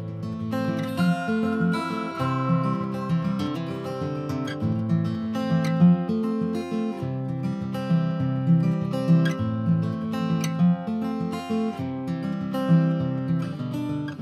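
Background music: a strummed acoustic guitar with plucked notes.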